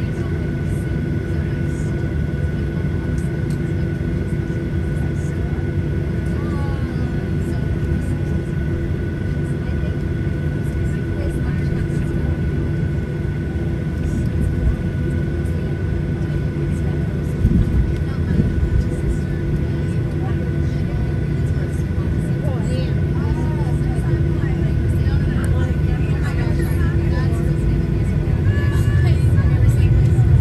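Cabin sound of a Boeing 737-800 taxiing, heard from a window seat: its CFM56 engines give a steady deep rumble with a thin steady whine. The sound grows louder over the last few seconds as the thrust rises.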